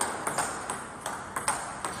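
Table tennis ball clicking off the rubber-faced bats and bouncing on the table in a fast rally: a quick, even run of sharp ticks, about three a second.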